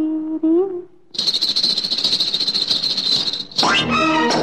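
Kathak ghungroo (ankle bells) jingling in a fast, unbroken shimmer for about two and a half seconds, following a held sung note. Loud music with brass comes in near the end.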